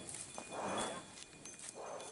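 Bull breathing hard: two noisy exhalations, the first about half a second in and the second near the end.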